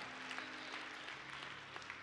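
Faint applause from an audience in a hall, slowly dying away, over a low steady hum.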